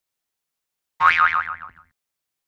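A cartoon-style "boing" sound effect: a single springy tone that starts suddenly about a second in, wavers rapidly up and down in pitch and dies away within a second.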